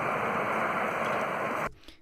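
Playback of an outdoor field recording: a steady hiss of wind and road traffic noise that remains after noise reduction and normalizing, cutting off suddenly near the end when playback stops.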